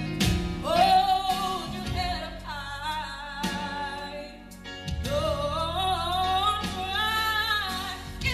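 A young woman singing live into a handheld microphone, holding long notes and sliding between them over a sustained low backing, with a short breath about halfway through.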